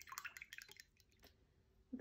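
Paintbrush being rinsed in a glass of water: faint quick clicks and drips that die away about a second in.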